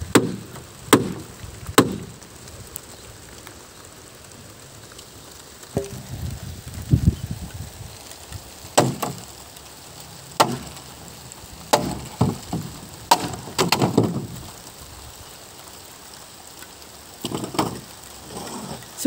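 Sharp wooden knocks and cracks as the pole railing of a small wooden hut is struck and wrenched apart, coming in irregular clusters with quieter pauses between.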